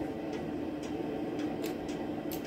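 A man drinking water from a plastic bottle: a few faint clicks and swallows over a steady low room hum.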